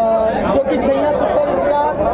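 Speech: a man talking, with other voices chattering in the background.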